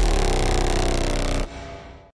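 The last chord of an electronic dance-music intro track ringing out, dipping slightly in pitch at first, then dropping away about one and a half seconds in and fading out.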